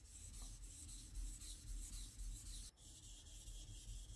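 Faint rhythmic scraping of a kitchen knife blade stroked back and forth on a 2000-grit whetstone, with a brief break about two-thirds of the way through.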